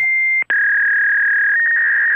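Loud steady electronic tone. It cuts out briefly about half a second in and resumes slightly lower in pitch.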